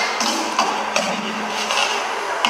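Sharp percussive strikes from a dance routine mimicking ironworkers' hammering, several to the second in an uneven rhythm, over a low steady drone.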